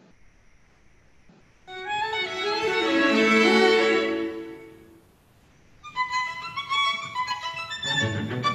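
Recorded classical string music, violins and cello: after a brief silence a loud held chord swells and dies away, and after a short pause quick bowed notes start up again near the end.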